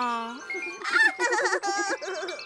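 A high voice-like sound slides down in pitch and fades out about half a second in, followed by a bright, tinkling children's music cue with wavering, wobbling pitched notes.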